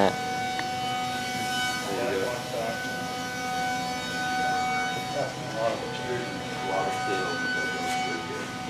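Steady industrial hum of several constant tones, with faint voices talking at a distance now and then.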